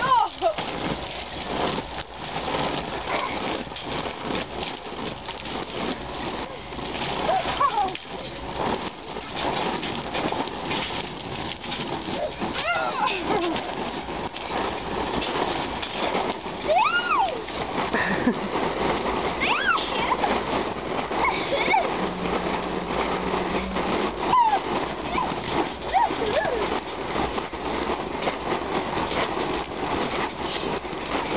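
Water spraying and splashing onto a wet trampoline mat in a steady rain-like hiss. Children give high squeals and shouts every few seconds.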